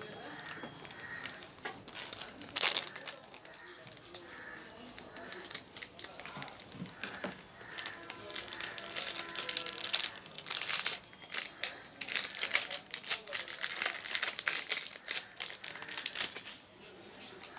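Plastic packaging crinkling and rustling in the hands as small electronic modules are unwrapped, with irregular clicks and rattles of the boards and parts being handled; the sharpest crackle comes about two and a half seconds in, and another dense run near the end.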